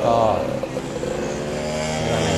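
A motorcycle engine running steadily at a constant speed, under a short drawn-out spoken syllable at the start.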